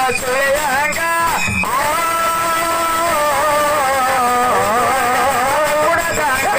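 A male folk singer singing a dollina pada into a microphone, drawing out long held notes that slide up and down in pitch, with a steady held note about two seconds in.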